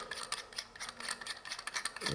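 Faint rubbing and small scattered clicks as a knife handle's butt cap is twisted loose by hand.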